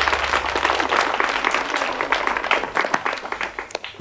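A studio audience of children applauding, with many hands clapping at once; the clapping thins out and dies away near the end.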